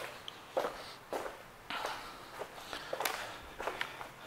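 Footsteps on a hard floor, roughly two uneven steps a second, as someone walks around a parked motorcycle.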